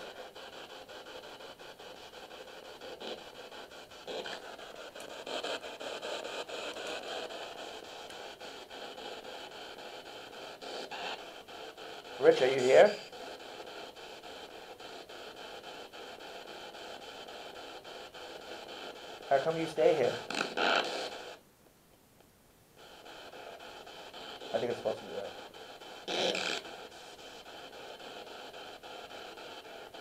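Ghost-hunting spirit box sweeping radio stations, playing a steady hiss of static through a small external speaker, broken a few times by brief snatches of voice. The hiss cuts out suddenly for about a second just past the middle.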